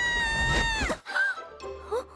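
A woman's long, high-pitched scream as she falls, held on one pitch and cut off after about a second, followed by a couple of short vocal sounds.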